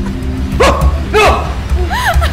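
A woman laughing in high, rising-and-falling peals, several bursts about half a second apart, over low background film music.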